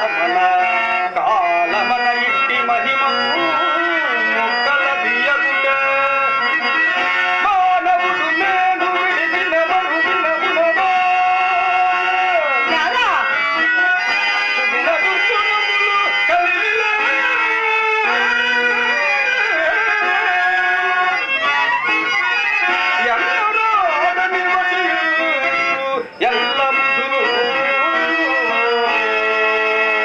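A man singing a Telugu stage verse (padyam) in long, sliding melodic phrases over a harmonium holding sustained notes. There is a brief break about 26 seconds in.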